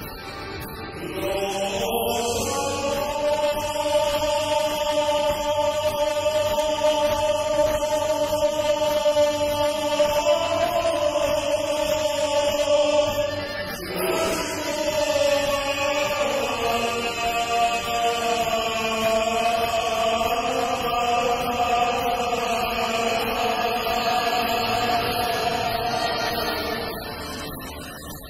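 A sevdalinka sung live by many voices together, the audience singing along, in long held, slightly wavering notes. There is a short break about halfway through before the next phrase.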